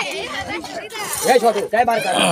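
People talking: speech that the recogniser could not make out, with some crowd chatter.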